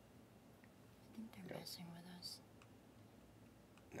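Near silence with faint, quiet speech or whispering for about a second, a little over a second in.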